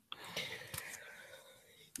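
Faint whispered speech, fading out about a second and a half in.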